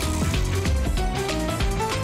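Upbeat TV quiz-show segment jingle with a heavy bass beat and busy percussion, playing over the animated introduction to the next game.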